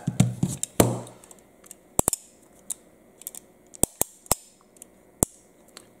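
Sharp metallic clicks of 1911 pistol hammers being thumbed back onto their quarter-cock, half-cock and full-cock notches: about eight crisp clicks spread out, some in quick pairs.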